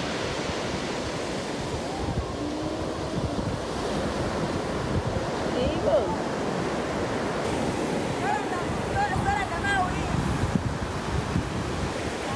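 Ocean surf breaking and washing up the beach, with wind on the microphone.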